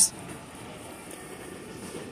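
Faint, steady background hum of a large store's interior, with no distinct events.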